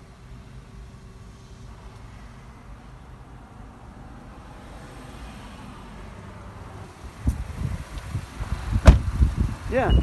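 A quiet, steady background inside a Honda Ridgeline's cabin. About seven seconds in come handling and movement noises, then one loud thud near the end as the pickup's door is shut. A high steady beep starts just at the very end.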